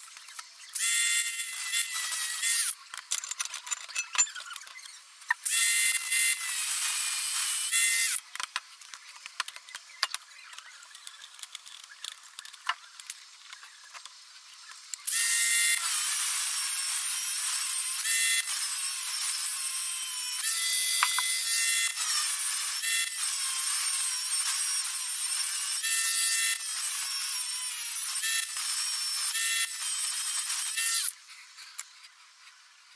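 Parkside Performance cordless angle grinder, refitted with a new BLDC motor controller, cutting through the steel flight of a boiler feed auger with a cut-off disc. It makes a steady high whine with grinding hiss. Two short cuts come first, then from about halfway one long continuous cut.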